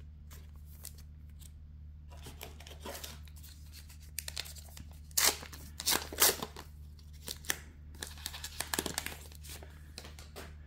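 Trading-card booster pack's foil wrapper being torn open by hand, in several short bursts of ripping and crinkling about two, five and eight seconds in. A steady low hum runs underneath.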